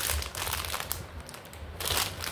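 Small clear plastic snack bag crinkling as it is handled and turned in the hands, on and off, fading in the middle and picking up again near the end.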